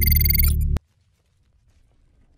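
Electronic logo sting with a heavy low bass and bright ringing high tones, cutting off suddenly just under a second in, then near silence.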